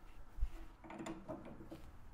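Drill press chuck being tightened with a chuck key in one of its three holes: a soft knock about half a second in, then a few faint clicks as the key's gear turns the chuck to snug the jaws on the bit.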